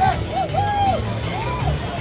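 Stadium ambience: a voice over music, with a steady low hum and crowd chatter underneath.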